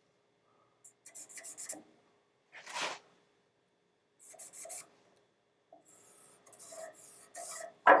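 A marker scratching on a flat steel bracket in several short strokes, drawing out the line where the bracket will be cut down.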